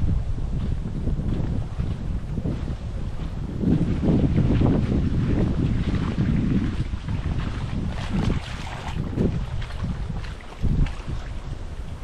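Gusty wind buffeting the microphone, strongest a few seconds in, over small wind-driven waves lapping at a lake shore.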